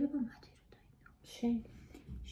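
Quiet conversational speech in a pause: a word trailing off at the start, then a short soft word with breath noise about one and a half seconds in.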